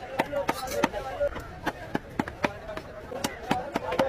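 A large knife chopping rapidly through queen fish flesh into a wooden chopping block, sharp chops at about three to four a second.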